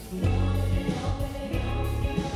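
Live pop-rock band playing, with several women singing together over electric guitar, keyboard and drums, on top of strong held bass notes.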